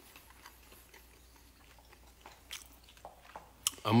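Faint close-up chewing of a mouthful of dakgangjeong (Korean glazed fried chicken), with a few small mouth clicks.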